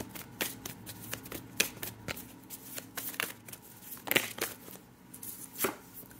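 A tarot deck being shuffled by hand: a run of quick, irregular card snaps, a little louder about four seconds in and again near the end.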